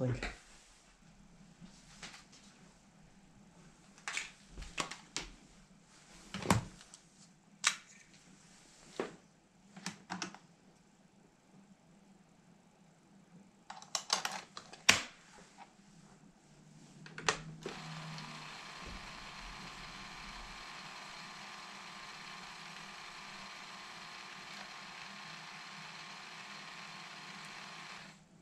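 A series of clicks and knocks as a microdrive cartridge is pushed into a Sinclair QL and keys are pressed. Then, about 17 seconds in, the QL's microdrive starts running, a steady whirr of its tape loop spinning as it loads a program, a sign that the drive works.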